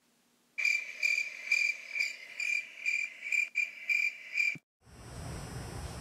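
Crickets chirping in a steady rhythm, about two high-pitched chirps a second, starting about half a second in and cutting off suddenly near the end: the dubbed-in comedy 'crickets' sound effect for an awkward silence.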